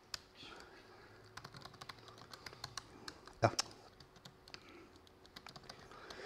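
Typing on a laptop keyboard: faint, irregular key clicks, with one heavier keystroke about three and a half seconds in.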